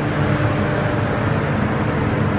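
Steady machine hum and rushing noise with a low steady tone, unchanging throughout.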